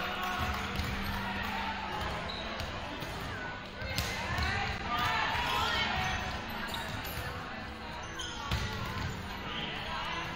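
Volleyballs being hit and bouncing on a hardwood gym floor in a large gym, with a sharp smack about four seconds in and another near the end, under indistinct players' calls and chatter.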